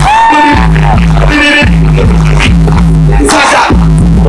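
Live hip hop music played loud through a concert sound system, with heavy bass notes repeating in a steady rhythm and a short pitched phrase that falls at the start.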